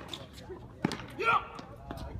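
Tennis ball sharply struck and bouncing on a hard court: two crisp pops about a second apart, with a brief loud voice call between them.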